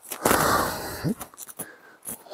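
A rock-cut millstone door being pushed in its slot: a rough scraping rush of stone on stone lasting under a second, then a short rising grunt of effort and a few sharp knocks.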